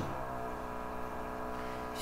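A man's voice drawing out a long hesitation sound at one steady pitch between words.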